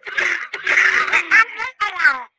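Cartoon car horn pressed, sounding a comic sound effect: a dense burst of chatter, then short falling squeaks near the end.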